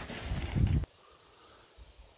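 A burst of low, rumbling rush on the microphone, typical of wind buffeting or handling. It cuts off abruptly a little under a second in and leaves near silence.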